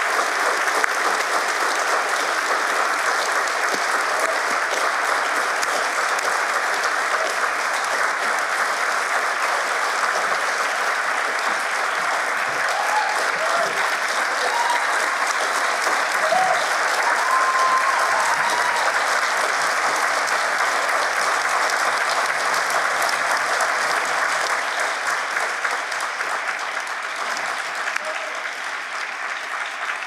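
Audience applauding steadily, with a few voices calling out over the clapping, easing off a little near the end.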